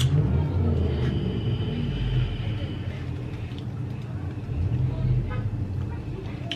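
Low, steady rumble of a motor vehicle's engine, with a faint thin high whine over the first half.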